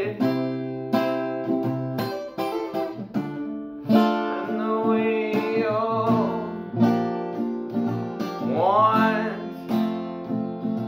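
Acoustic guitar strummed in a steady rhythm, about one strum a second, with a man's singing voice coming in over it from about the middle.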